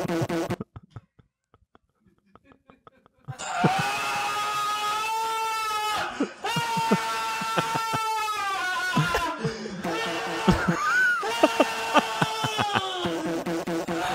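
Men laughing hard: after about three seconds of near silence, long high-pitched held notes of laughter, broken every two or three seconds.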